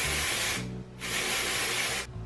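Aerosol can of dry shampoo spraying onto a wig in two bursts: the first stops about half a second in, the second starts about a second in and runs for about a second.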